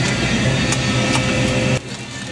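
A steady, motor-like mechanical hum with a few light clicks, cutting off suddenly near the end.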